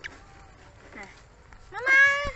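Baby monkey giving one loud, high, even-pitched cry near the end, dipping slightly in pitch as it ends.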